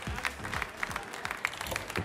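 Audience applauding, dense hand-clapping over background music.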